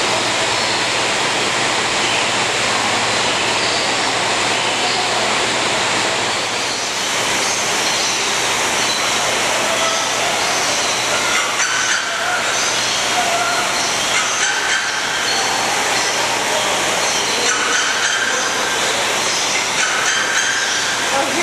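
Steady, loud rushing noise with short bird calls scattered over it, more of them in the second half.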